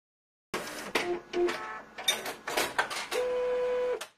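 Printer mechanism working: a run of sharp clicks and short whirs, then a steady hum for the last second that cuts off suddenly.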